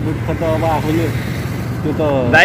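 A motor vehicle's engine running steadily as a low hum, under soft talk about half a second in.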